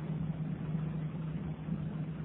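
A steady low hum over faint hiss: the background noise of a lecture recording, with no speech.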